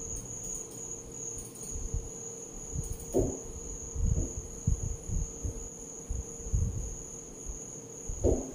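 Chalk knocking and scraping against a chalkboard as small loops are drawn, in a few soft knocks about halfway through, over a steady high-pitched whine.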